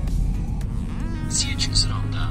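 Steady low drone of a BMW E46 320d diesel engine and road noise heard inside the cabin while cruising. About a second in, a short voice prompt from a phone navigation app sounds over it.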